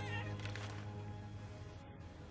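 Background drama score of sustained, held notes, slowly fading. A brief wavering, high-pitched cry sounds right at the start.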